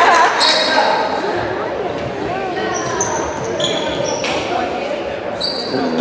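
Basketball game sounds in an echoing gym: a ball bouncing on the hardwood floor, voices of players and spectators in the hall, and a few short high sneaker squeaks.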